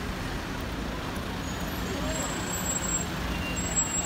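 City street traffic close by: vans and cars idling and creeping past in slow traffic, with a steady low engine rumble and hum.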